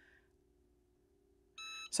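Cricut EasyPress heat press giving one short electronic beep near the end as its 30-second timer reaches zero, signalling that the press cycle is finished.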